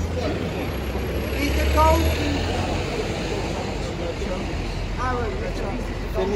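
Street traffic: a steady low engine rumble that swells for a moment about two seconds in, with bystanders' voices in the background.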